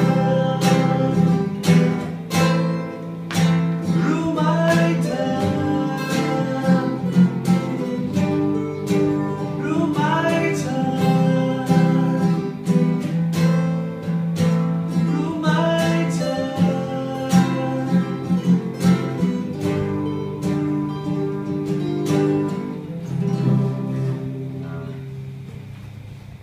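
Solo steel-string acoustic guitar played fingerstyle: a plucked melody over bass notes. Near the end the playing stops and the last notes ring out and fade.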